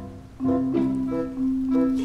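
Background music: short plucked string notes over a steady held low note.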